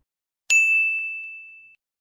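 A single bright ding sound effect about half a second in: one high ringing tone that fades out over about a second. It is the chime that marks the correct quiz answer being revealed.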